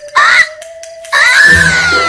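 Cartoon sound effects: a short voice-like squeal over a held tone, then from about a second in a loud, shimmering magic swoosh whose pitch falls away, marking a magical scene transition.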